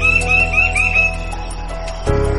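A rooster crowing, one long call that ends about a second in, over steady background music.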